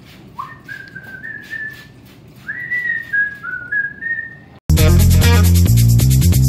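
A person whistling a short tune, single clear notes stepping up and down, for about four seconds. Near the end, loud music with a heavy bass line and guitar cuts in suddenly.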